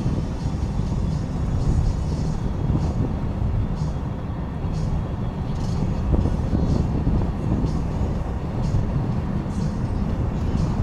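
Steady low rumble of a car's tyres and engine heard from inside the cabin while driving.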